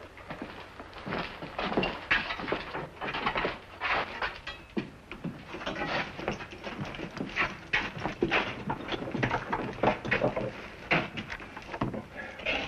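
Irregular knocks, scuffs and clicks of several men moving about on a wooden floor and getting through a barred jail-cell door.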